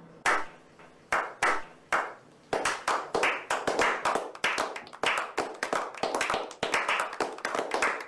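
A slow clap by a small group. A few single claps come spaced out, then from about two and a half seconds in they speed up into faster clapping of several claps a second.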